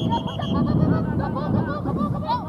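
Birds calling in many short chattering notes, with a fast run of high piping notes in the first half-second, over a steady low rumble.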